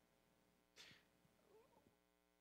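Near silence: faint room tone, with a soft breath-like puff a little under a second in and a faint, short wavering voice-like sound near the end.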